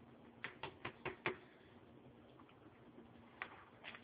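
Faint clicks and taps over quiet room tone: about five in quick succession in the first second and a half, then one more near the end.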